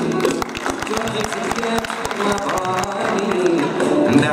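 Andalusian music ensemble playing an instrumental passage: ouds, mandolins and violins together, with many quick, sharply plucked notes.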